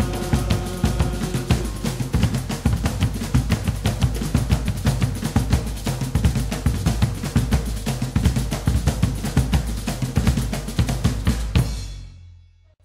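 Afro-Brazilian terreiro drumming: a percussion ensemble of hand drums playing a fast, dense rhythm. A held melodic note drops out a second or so in, leaving drums alone until they stop near the end.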